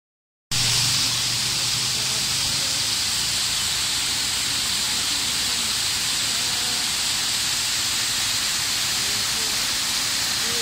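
Steady rush of falling water from a waterfall and the overflow pouring over a small concrete weir. It starts abruptly about half a second in.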